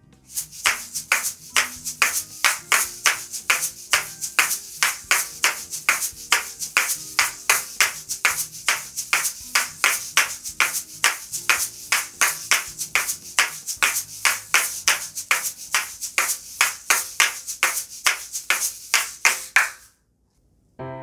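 A pair of asalatos (paticas) — shaker balls joined by a cord — played in a repeating rhythm of two flip-flops and one dan-dan. The balls make sharp clacks and seed-shaker rattles, several a second in an even pulse, stopping just before the end.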